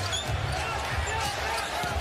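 A basketball dribbled on a hardwood arena floor, a series of repeated thuds, over the steady hum of an arena crowd.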